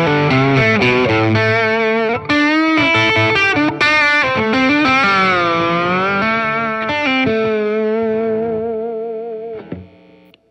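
Swamp-ash S-style electric guitar on its Lindy Fralin Vintage Hot bridge single-coil pickup, overdriven through an Exotic Effects AC Plus pedal, playing a lead phrase with bent and sustained notes. The last note dies away near the end.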